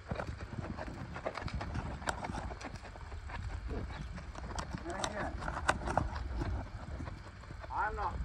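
Horse's hoofbeats on sand as it moves around the pen under a rider, with scattered sharp clicks over a steady low rumble.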